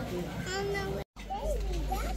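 Voices in the background, then, after a short dropout about halfway through, a young child's high voice calling out in rising and falling tones.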